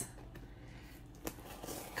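Faint rustling from a cardboard package being handled and opened, with one soft click a little past a second in.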